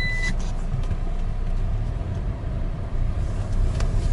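Car-interior noise while driving: steady engine and road-tyre rumble. Just after the start, a thin, high, steady tone cuts off.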